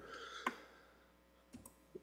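Quiet room tone with one sharp click about half a second in and two faint ticks near the end.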